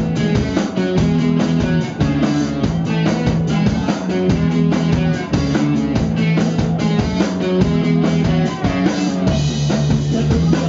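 Live punk-rock band playing loud: distorted electric guitar, electric bass and a drum kit keeping a steady, driving beat.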